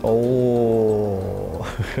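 A man's long, drawn-out hesitation sound, held for about a second and a half with its pitch slowly falling, then breaking into the start of a short laugh near the end.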